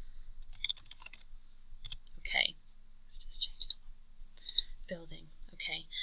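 Typing on a computer keyboard: short runs of key clicks, with a soft, low voice murmuring in the second half.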